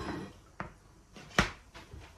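Two knocks, a light one about half a second in and a sharper, louder one near the middle, as a small plate and a cake pan are set down on a wooden cutting board.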